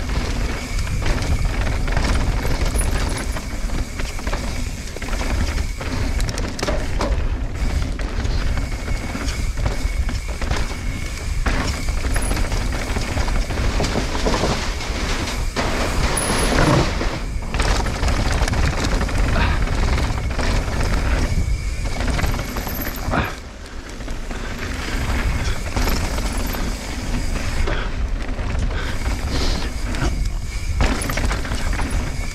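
Mountain bike descending a downhill trail, heard from a camera on the rider: wind rushing over the microphone, tyres on dirt and rock, and the bike rattling and knocking over bumps and a wooden ramp. A faint steady high buzz runs under it, and the noise drops briefly about three-quarters of the way through.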